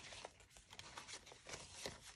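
Faint rustling and light flicks of paper banknotes being handled and shuffled by hand.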